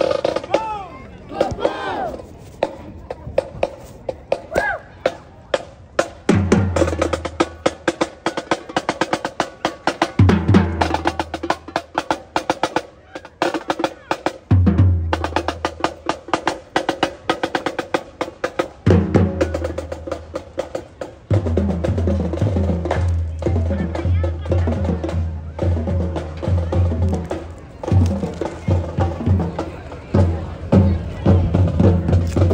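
Marching band playing as it passes: drums keep up a fast, steady run of strokes throughout, and low brass comes in with loud held notes about six seconds in, stopping and starting again several times.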